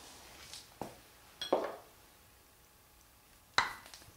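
Metal tools clanking on a transmission's drain plug and case while the plug is undone with a wrench: a light click about a second in, a louder metallic clatter a little later, and a sharp clank with a brief metallic ring near the end.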